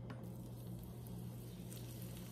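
Faint, steady sizzle of an onion ring in peanut oil that is not quite hot enough, over a steady low hum.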